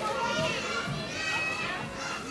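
Children's voices and chatter in the background.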